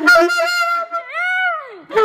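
A small dog howling along to a saxophone: a held saxophone note, then a long howl that rises and falls in pitch.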